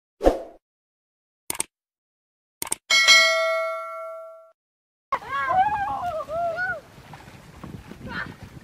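Subscribe-button animation sound effects: a soft thump, two sharp clicks, then a bell ding that rings out and fades over about a second and a half. After a short silence, a voice-like sound rising and falling in pitch for under two seconds, then low outdoor background noise.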